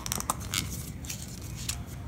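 A few short clicks and scrapes from a paintbrush and small plastic glaze cups being handled, as the brush is worked dry of rinse water before it goes into the glaze.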